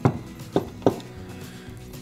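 Quiet background music with two sharp clicks, about half a second and just under a second in, from the speaker's plastic housing and its detached back cover being handled.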